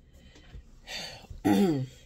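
A woman clearing her throat: a breathy rasp about a second in, then a short, loud voiced grunt near the end.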